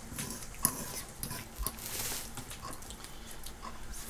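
A person eating at a table: soft chewing and mouth noises, with small scattered clicks of a fork against a plate.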